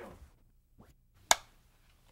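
A film clapperboard's striped hinged stick snapped shut once, a single sharp clap about a second and a quarter in: the slate marking the start of a new film roll so picture and sound can be synced.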